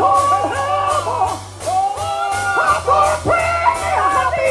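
Gospel song performed live: a singer with a band, over a steady bass line and a regular drum beat.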